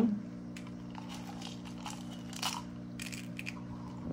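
Small aquarium gravel stones dropped by hand into a small plastic cup, a few faint clicks and crunches, the clearest about two and a half seconds in. A steady low hum runs underneath.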